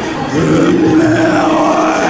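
A man's long, drawn-out vocal sound of delight after a swig of ramune soda, held for over a second, with its pitch rising partway through.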